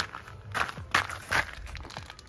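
Footsteps on a gravel and dirt path, about four steps a little under half a second apart.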